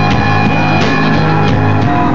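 Hardcore punk band playing live and loud: distorted electric guitar and bass chords held over a drum kit pounding out repeated hits and cymbal crashes.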